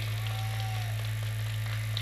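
A pause in amplified speech: a steady low electrical hum from the sound system, with a faint brief higher tone near the start.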